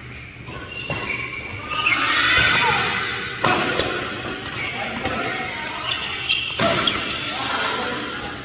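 Racket strikes on a shuttlecock in a badminton doubles rally: sharp hits a second or more apart, the loudest about three and a half and six and a half seconds in, with players' voices between them.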